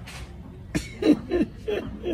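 A man laughing heartily in a quick run of short bursts, starting just under a second in.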